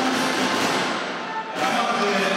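Marching snare drums played together, a dense rattle of strokes with no tune. It breaks off about one and a half seconds in, where music with held notes takes over.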